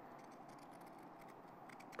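Fiskars pinking shears cutting through fabric: faint snipping clicks of the zigzag blades closing, several of them, more in the second half.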